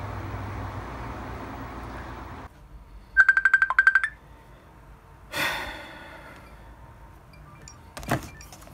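A phone ringtone for an incoming video call: a quick run of high electronic beeps about three seconds in, followed by a brief swooshing chime. Before it, a steady low rumble cuts off suddenly about two and a half seconds in.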